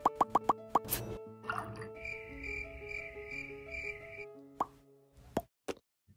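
A quick run of about seven short plop sound effects over light background music, with held musical notes in the middle and three separate sharp clicks near the end.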